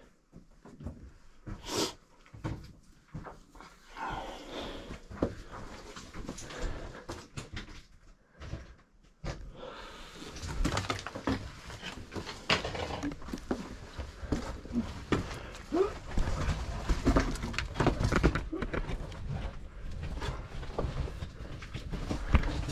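Hard breathing and panting with scuffing, scraping and knocking of hands, boots and clothing on rock as a person scrambles through a tight mine passage. The scuffling grows busier and louder about ten seconds in.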